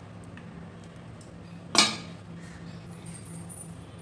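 Metal tongs clinking once against a plate about two seconds in as a syrup-coated pastry is set down, over a faint steady low hum.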